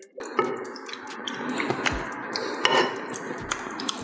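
Water poured from an electric kettle into a stainless-steel pot, a steady splashing pour with a few sharp clinks of metal.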